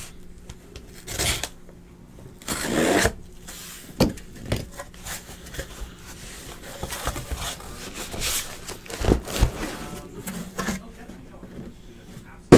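Cardboard scraping and rubbing, with a few sharp knocks, as a case of trading-card hobby boxes is opened and the boxes are pulled out by hand.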